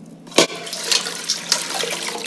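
Half-and-half vinegar and water poured from a glass jug into a stainless steel bowl, splashing onto copper coins at the bottom. A sharp tap about half a second in, then a steady splashing pour.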